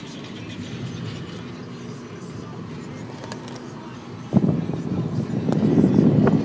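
A phone being handled close to its microphone, with loud rustling and rubbing that starts suddenly about four seconds in, over a steady low rumble inside a car.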